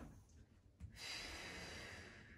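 A person's long exhale blown out through the mouth, starting sharply about a second in. It is the controlled breath-out of a hip thrust as the hips drive up from the bottom.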